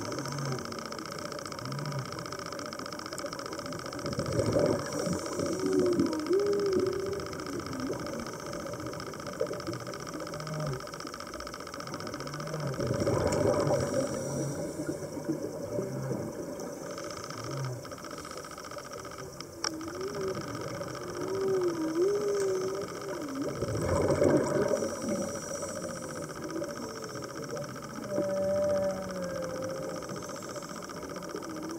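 Underwater sound of a scuba diver breathing through a regulator: a noisy rush of exhaled bubbles roughly every eight to ten seconds, with softer wavering tones in between.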